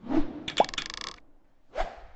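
Cartoon animation sound effects: a whoosh at the start, a quick rising pop about half a second in with a short rapid rattle of clicks, then another short swoosh near the end.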